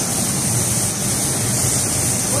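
Steady rushing hiss of water spraying from a hose onto a car, with a low steady rumble underneath.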